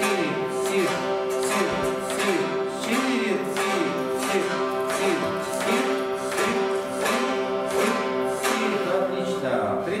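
Four chatkhans, Khakas plucked board zithers, played together in unison on a practice exercise. The same short note pattern is plucked about twice a second, and the strings ring on between the plucks.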